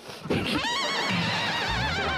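A horse-whinny sound effect: one long, high, wavering neigh that starts about half a second in, with laughter underneath.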